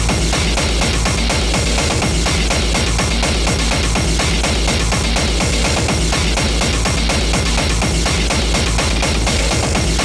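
Speedcore/hardcore techno track playing: a fast, steady kick drum under a dense, noisy wash of sound.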